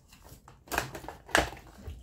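Fleece sleeve brushing and rustling over the recording phone as it is handled, with a sharp click a little past halfway.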